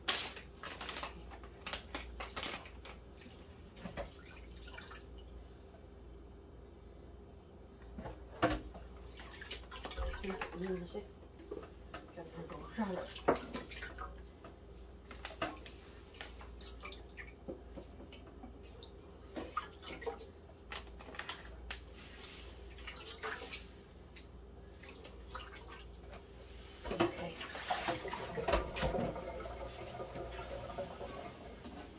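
Work at a kitchen sink: water splashing and dishes and bowls clinking and knocking at irregular intervals, over a faint steady hum.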